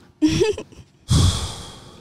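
A person's sigh: a brief voiced sound, then a long, breathy exhale close to a studio microphone that fades away over nearly a second.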